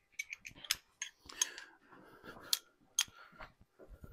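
Metal hand tools clinking and clicking irregularly as a six-point socket is fetched and handled, with the sharpest clinks about two and a half and three seconds in.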